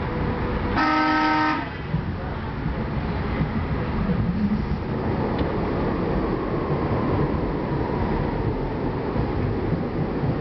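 A Budd-built PATCO rapid-transit train's horn gives one short blast about a second in, over the steady rumble of the train running on the rails; the rumble carries on as the train enters a tunnel.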